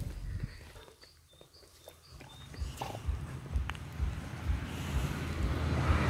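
A large bulldog-type dog moving about in the grass and sniffing at the ground close by: irregular low thumps and rustling that grow louder and busier in the second half. A few faint bird chirps in the first couple of seconds.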